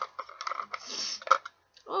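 Small plastic toy rabbit hutch being handled: light clicks, a short scrape and one sharp click a bit over a second in as its sliding divider comes out.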